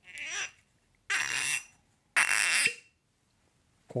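Cork stopper of a whisky bottle being twisted out of the glass neck, squeaking and rubbing in three short bursts about half a second apart.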